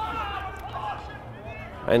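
Faint distant voices calling, over a low steady hum.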